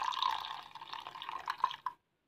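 Rose water poured in a thin stream into a glass bowl of frothy, soapy liquid, splashing and bubbling as it lands, with a few drips near the end. It cuts off suddenly just before the end.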